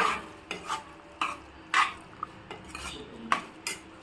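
A long metal spoon stirring thick mutton curry in a pressure cooker, scraping and knocking against the pot in about nine short, irregular strokes.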